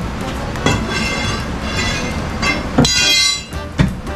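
Hand tool knocking and scraping against wooden floor framing as boards are worked loose, with a few sharp knocks and a brief high-pitched squeal about three seconds in.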